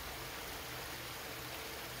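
Steady, even hiss-like background noise with a faint low hum underneath, unchanging throughout.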